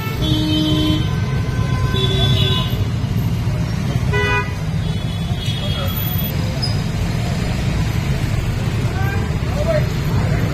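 Busy road traffic with a steady low rumble and vehicle horns honking in short toots: near the start, around two seconds in and about four seconds in. People talk underneath.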